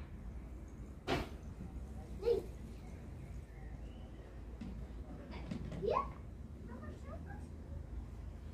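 A young child making a few short vocal sounds, one rising in pitch near the end, with a sharp click about a second in over a steady low rumble.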